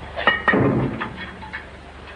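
Two quick metallic clanks with a short ring, followed by a dull thump, as gear is handled and set down in a cell, over the old soundtrack's steady low hum.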